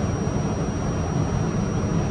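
Steady equipment noise of an R68-series subway car holding in place: a low rumble with a thin, steady high whine above it.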